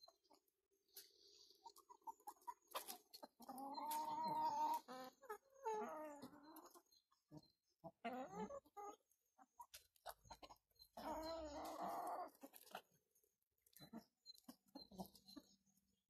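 Domestic chickens clucking and calling, in four bouts of drawn-out, wavering calls, the longest about a second and a half, with scattered light clicks between them.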